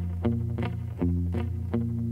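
Electric Telecaster guitar playing a boom-chick pattern in A: low bass notes on the open low strings alternating with short A-chord strums, about three events a second.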